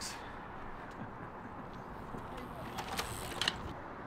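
Faint, steady distant traffic noise, with a few soft taps about three seconds in.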